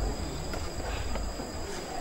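Room noise in a pause between speech: a low hum and a faint, steady high-pitched whine that stops near the end.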